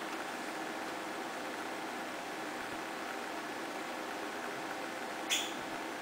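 Steady, even hiss of background noise, with one short sharp click about five seconds in.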